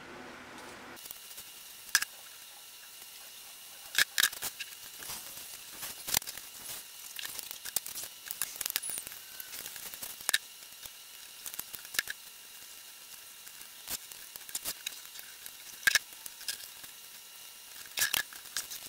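Scattered light clicks and taps, irregularly spaced, over a faint steady hiss: picture frames being handled and pressed down onto foam board while being glued with a hot glue gun.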